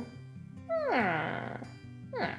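A woman's hummed, thoughtful 'hmm' that slides down in pitch, starting under a second in, over soft steady background music.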